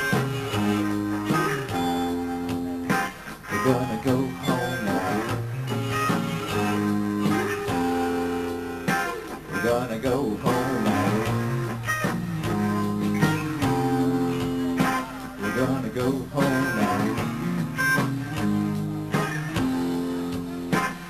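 Live rock band playing an instrumental passage between sung lines: electric guitars sustain and change chords over bass and a steady drum beat.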